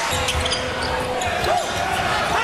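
Basketball being dribbled on a hardwood court, repeated bounces over steady arena crowd noise.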